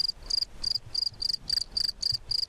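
A cricket chirping in a steady, evenly spaced rhythm of short high-pitched chirps, about three to four a second.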